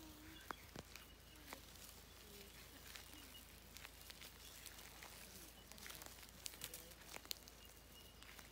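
Quiet bushland with a few faint, sharp crackles of dry leaf litter as a lace monitor walks over it, scattered unevenly, most of them in the first two seconds and near the end.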